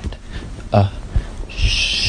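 A person hushing with a long, steady 'shhhh' that starts about one and a half seconds in. Before it comes a single brief, loud hoot-like vocal sound.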